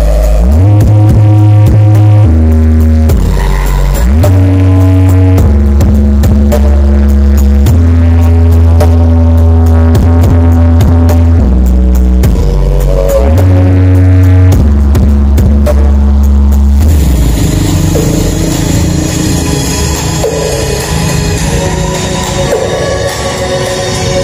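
Music played loud through a large stacked-speaker sound system, with a heavy bass line stepping between low notes. About two-thirds of the way through, the deep bass drops out and the music turns lighter.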